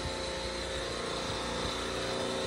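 Supermarket R22 refrigeration compressor rack running: a steady machine-room drone with a faint, constant high whine.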